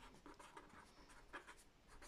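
Faint scratching of a pen writing on paper, in a run of short strokes.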